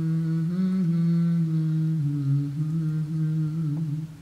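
Background music: a low humming voice holds a slow melody on long, steady notes, dipping lower about two seconds in.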